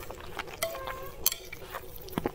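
Close-miked chewing of spicy noodles: an irregular scatter of small wet mouth clicks and smacks.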